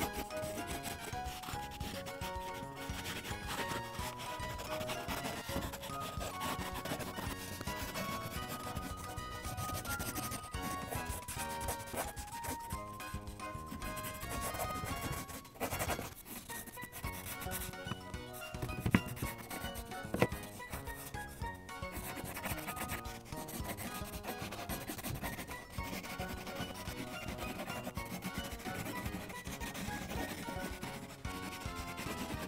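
A colored pencil scribbles back and forth on a coloring-book page, a continuous scratchy rubbing of pencil lead on paper, under light background music. Two sharp taps stand out about two-thirds of the way through.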